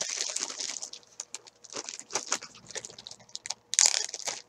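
Handling noise of a bag and crocheted coasters being rummaged: irregular crinkling rustles and small clicks, dense in the first second and sparser after.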